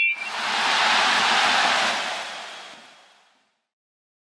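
Edited-in transition sound effect: a short bright chime at the start, then a smooth hissing whoosh that swells and fades away over about three seconds into silence.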